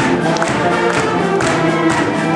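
Full symphonic concert band of brass and woodwinds, tuba included, playing held chords with short accented notes over them.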